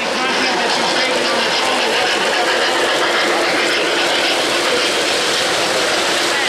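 O-gauge three-rail model passenger train rolling steadily along its track, with many people talking in the background.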